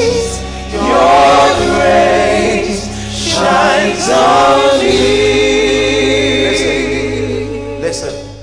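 Gospel worship song: voices singing long, drawn-out phrases with vibrato over steady sustained low accompaniment notes.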